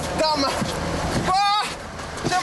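Outdoor commotion: a steady noisy din with scattered voices, and one loud, high-pitched cry about one and a half seconds in.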